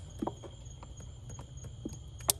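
Light plastic clicks and handling noise, about one every half second, as a wiring harness connector is pushed onto the voltage regulator plug of a Yamaha F115 outboard, its locking tab not yet snapped home.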